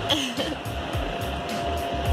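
Steady whir of a bounce house's inflation blower, under background music with an even beat.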